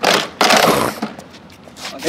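A skateboard coming down hard on concrete in a kickflip, then its wheels rolling and scraping over the concrete for about a second before fading.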